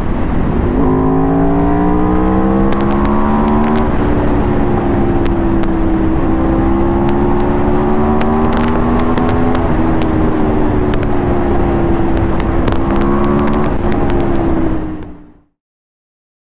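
Aprilia RSV4 RR's V4 engine pulling hard at highway speed, its pitch climbing slowly in several long stretches with short dips between them as it shifts up, over the rush of wind. The sound fades out near the end.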